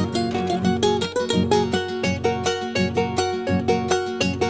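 Instrumental break of an Ayacucho carnaval song: a charango and a guitar strummed and plucked together in a brisk, even rhythm, with no singing.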